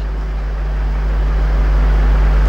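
A steady low electrical hum, like mains hum picked up by a microphone and sound system, with a fainter higher hum above it, growing slowly a little louder.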